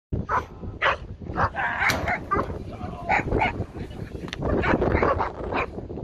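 Five-and-a-half-month-old puppy barking repeatedly at the helper in front of it, a run of short sharp barks at roughly two a second.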